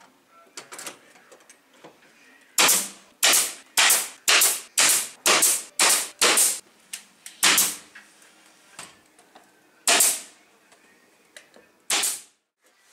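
Pneumatic nail gun firing nails into wooden boards: a quick run of about nine shots, each a sharp crack with a short rush of air, then three more spaced a couple of seconds apart near the end.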